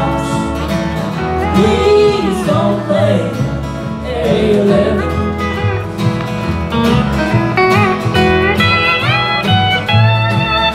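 A live country band plays an instrumental passage: fiddle and steel guitar carry the melody over acoustic guitar and upright bass, with gliding steel-guitar notes climbing near the end.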